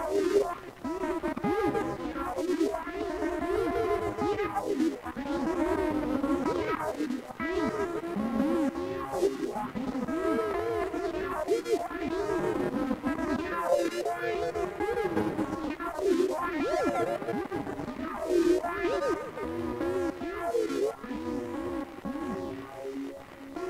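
Electric guitar played through heavy effects, its notes sliding and bending up and down in pitch almost constantly, giving a wavering, spacey sound.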